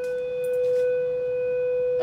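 A steady electronic beep tone held at one unchanging pitch throughout, loud and continuous.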